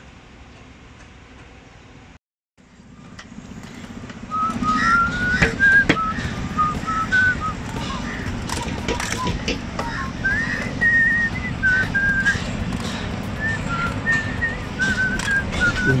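A tune whistled by a person, a single melody of held and sliding notes, starting about four seconds in over a steady low background rumble.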